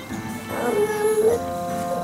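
A drowsy baby's drawn-out call of 'mama' or 'manma', one sound beginning about half a second in and lasting under a second, over background music.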